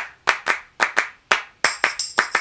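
Background music built on a rhythmic handclap beat, about four claps a second, with a high jingling layer joining near the end.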